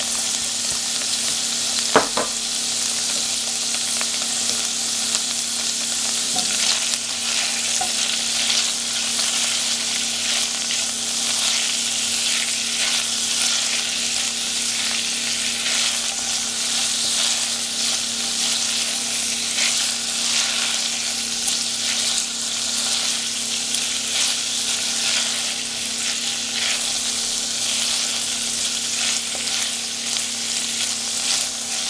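Tofu cubes and diced red chilli sizzling in hot olive oil in a steel pan, stirred and scraped with a silicone spatula. A single sharp knock about two seconds in.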